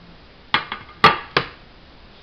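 Ceramic tile knocking against the tabletop as it is turned and shifted: four sharp clinking knocks in quick succession, the third the loudest.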